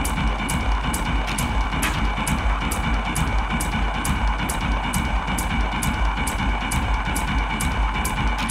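Hypnotic deep techno playing continuously: a steady kick drum and bass pulse under regularly spaced hi-hat ticks and sustained synth tones.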